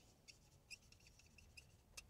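Faint, short, high squeaks of a marker writing on paper, a handful spaced irregularly.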